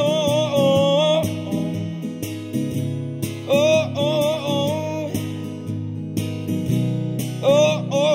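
A male voice singing over a strummed acoustic guitar. The voice comes in three long held phrases: one at the start, one about three and a half seconds in, and one near the end, with the guitar chords running steadily beneath.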